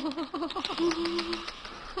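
Wooden door creaking open slowly: a wavering, squeaky creak, then a held note, then more wavering creak near the end.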